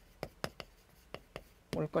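Chalk writing on a chalkboard: about five short, sharp chalk strokes clicking against the board. A man's voice starts near the end.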